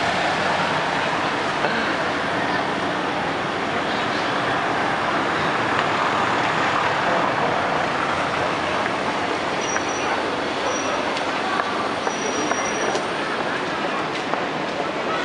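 Steady street ambience: an even wash of traffic and crowd noise with indistinct voices, and a few brief high squeaks near the end.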